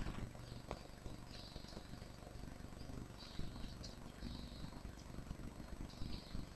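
Faint room noise with a steady low hum, a single soft click about a second in and a few light scratchy brushes: a computer mouse being clicked and dragged while drawing.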